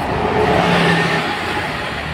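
Single-decker bus driving past at close range, its engine and tyres loudest about half a second to a second in, then easing off as it moves away.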